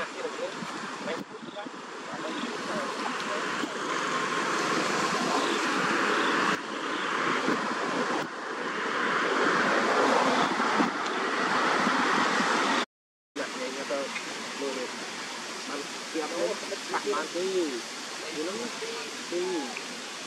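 A steady rushing noise that swells over about ten seconds, then breaks off abruptly. After it come faint voices with rising and falling pitch.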